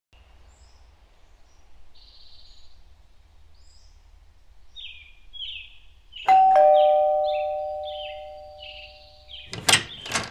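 Two-note doorbell chime, a high note then a lower one, rung about six seconds in and ringing out as it fades over about three seconds. Birds chirp faintly throughout, and a brief burst of noise comes near the end.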